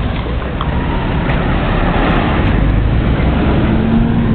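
Loud, steady low rumble of road traffic running beside the park, mixed with wind noise on the microphone.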